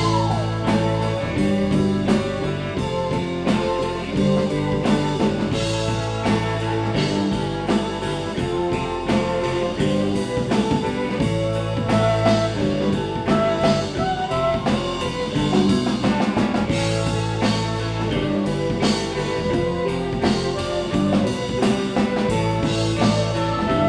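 Live rock band playing an instrumental passage: electric guitar, bass guitar and drum kit keeping a steady beat, with no vocals.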